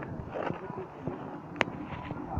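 Faint background chatter of people over a steady outdoor background, with one sharp click about one and a half seconds in.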